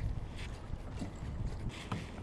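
Steady low wind rumble on the microphone over water noise around a kayak, with a few faint knocks.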